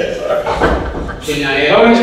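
Speech: people talking around a meeting table, with a man's voice starting clearly about halfway through.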